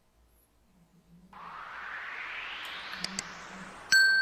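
Edited-in subscribe-animation sound effects: a rising whoosh that builds for about two and a half seconds, two quick clicks near its end, then a bell-like ding starting right at the end.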